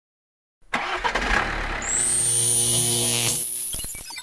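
Intro logo sound effects: after a short silence, a rushing noise with a low, motor-like hum and a high whine that rises and then holds. It ends in a few quick clicks.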